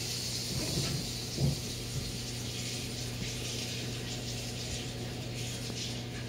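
Steady hiss of falling snow, over a low steady hum, with a single thump about a second and a half in.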